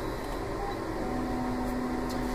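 Steady mechanical hum from a Cary Eclipse fluorescence spectrophotometer's plate reader just after its scan is stopped, with a low steady tone joining about a second in.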